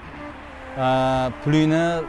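A man's voice holding two long, steady vowel tones, like a drawn-out chant, the second a little higher than the first and starting just after the first stops.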